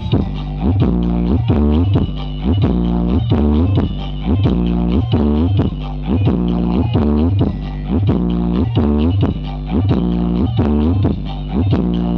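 Loud dance music played through a large carnival sound system of stacked speaker cabinets, with a heavy, steady bass and a fast repeating beat.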